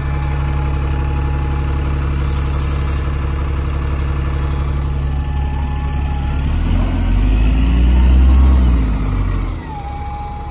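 Single-deck diesel bus engine running steadily close by, then revving up as the bus pulls away. The note rises and is loudest about eight seconds in, then drops off just before the end. A brief hiss about two seconds in.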